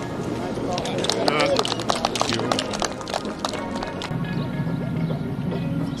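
Scattered handclaps from a golf gallery for a tee shot, over background music.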